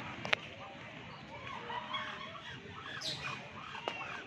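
Busy background of overlapping short calls and chatter from birds and distant voices, with a sharp click about a third of a second in and another near the end.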